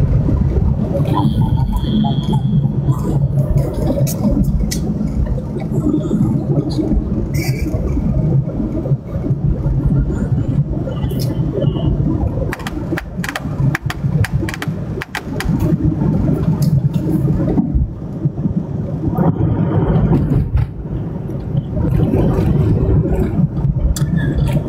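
Air conditioner running with a steady low hum and rumble, with scattered clicks and scrapes about halfway through.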